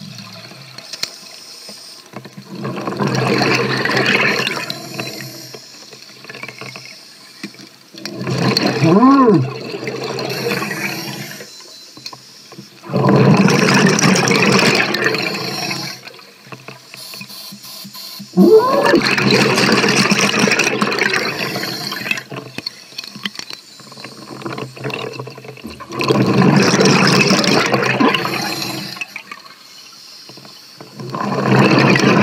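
Scuba diver breathing on an open-circuit regulator underwater: a gush of exhaust bubbles on each exhale, five times about every five to six seconds, with quieter inhales between. Two of the exhales carry a brief rising-and-falling whistle.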